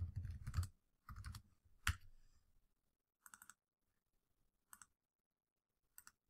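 Faint computer keyboard typing: a few scattered keystrokes and one sharper click, with near silence between them.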